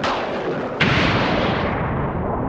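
Intro sound effects: sharp electric zap hits, one at the start and a louder one just under a second in, each falling away in pitch. Near the end a tone begins to rise steadily.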